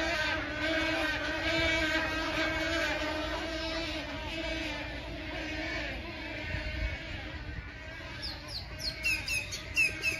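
A flock of birds making a ruckus: many voices calling at once in a dense, steady, wavering din. From about eight seconds in, sharp falling chirps stand out over it.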